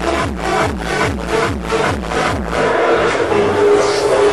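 Electronic dance music from a DJ set on a club sound system: a steady beat of about two strikes a second over repeating falling bass notes. About two and a half seconds in, the beat drops out, leaving held synth tones.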